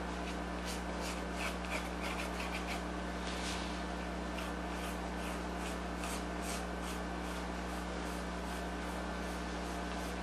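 Pencil scratching on plywood in many short strokes as lines are marked on the wood, the strokes thinning out in the last few seconds, over a steady low hum.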